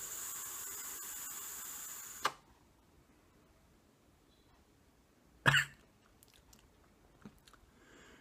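Steady hiss of a Fogger V4 dual-coil rebuildable atomizer being drawn on while its coils fire, lasting about two seconds and ending in a click: the first test puff on freshly rebuilt and wicked coils. About three seconds later comes a brief cough-like burst.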